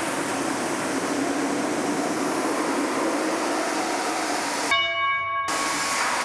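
Pressure washer jet through a 15-degree nozzle, a steady loud hiss of high-pressure water blasting into a cardboard box as the nozzle is brought closer. Near the end the hiss briefly drops away and a pitched machine whine is heard for about a second before the spray resumes.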